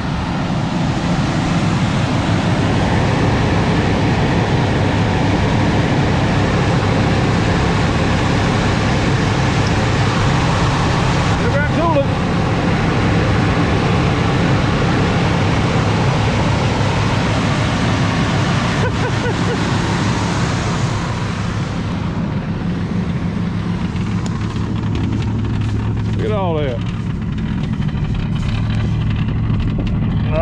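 1965 Mercury Montclair's 390 V8 running steadily soon after a cold start, its exhaust sounding rough through worn mufflers.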